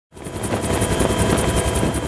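Helicopter heard from on board: steady engine and rotor noise with a rapid, even beat from the blades.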